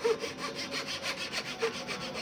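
Small handsaw cutting across a thin wooden wedge to trim it to length, in quick, even back-and-forth strokes, several a second.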